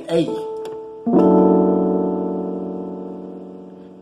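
A single piano note, then about a second in a full chord struck together and left ringing, slowly fading away. The chord is F-sharp in the bass under A-sharp, D, E and A (F#/A# D E A), a jazz voicing.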